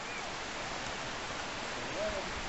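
Steady, even hiss of outdoor ambience with no distinct event in it.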